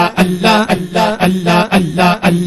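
Devotional zikr chant: a male voice repeating 'Allah' in a steady rhythm, about three syllables a second on a nearly constant pitch.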